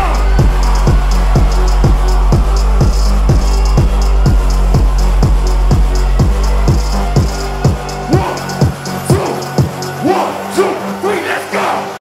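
Electronic dance music played live: a steady kick drum about twice a second over sustained bass and ticking hi-hats. About eight seconds in the bass drops out, and in the last two seconds the low end cuts away under voices over the thinned beat.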